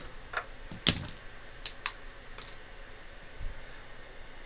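Small plastic 3D print being pried off the printer bed and its raft snapped away: a few sharp clicks and snaps, the loudest about a second in.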